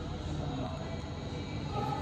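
Indoor eatery room noise: a steady low hum with indistinct voices in the background, a little stronger near the end.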